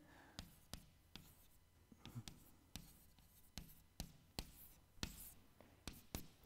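Chalk writing on a blackboard: faint, irregular taps and clicks of the chalk against the board, with a short scratch of a stroke near the end.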